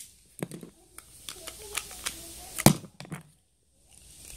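Scattered clicks and knocks of hands handling small plastic toy parts, with one sharp, loud click about two and a half seconds in, then a short near-silence.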